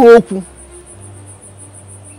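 A cricket chirping steadily, a high-pitched pulse about five times a second, heard after the last word of a woman's raised voice at the very start. A faint low hum comes in about a second in.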